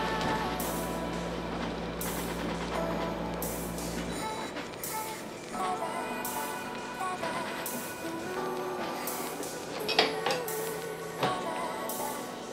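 A pretty loud air conditioner's steady low hum cuts off suddenly about four seconds in as it is switched off. Background music plays throughout.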